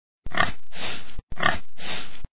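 A pig grunting twice in quick succession, each grunt about a second long.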